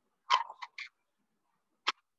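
A few short, sharp clicks: a quick cluster of three or four about a third of a second in, then a single click near the end, with near quiet between them.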